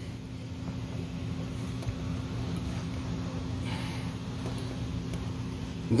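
A steady low mechanical hum in the background, with a brief faint rustle about four seconds in.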